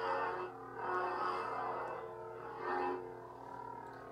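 Neopixel lightsaber's Proffie sound font playing through the hilt speaker: a steady pitched hum that swells three times as the blade is swung.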